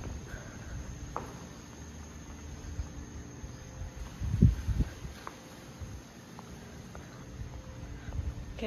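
Quiet night-time outdoor ambience with a faint, steady, high insect trill, likely crickets. A couple of low thumps come about halfway through, with a few soft clicks.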